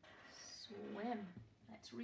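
A woman's voice, drawn out as she sounds out a word, with a dry-wipe marker squeaking briefly on a whiteboard as she writes.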